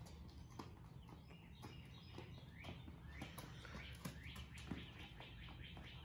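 Faint bird chirping, short calls repeating a few times a second from about halfway through, over quiet outdoor ambience with scattered light taps.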